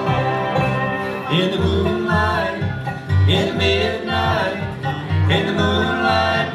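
Live bluegrass band of dobro, banjo, fiddle, acoustic guitar and upright bass playing an instrumental passage, with sliding, gliding lead notes over a steady plucked bass pulse.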